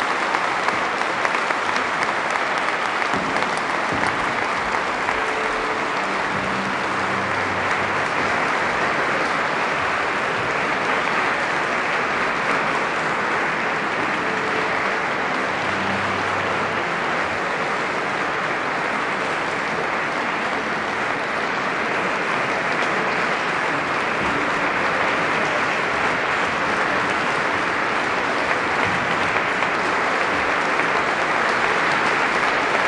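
Concert-hall audience applauding steadily at the close of a live performance of a work for tenor and string orchestra.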